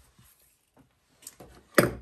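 Faint rustling and light taps of paper and cardstock being handled on a craft table, then a sharp knock near the end.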